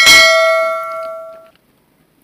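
Notification-bell 'ding' sound effect from a subscribe-button animation: one bright strike that rings with several tones and fades, cut off about a second and a half in.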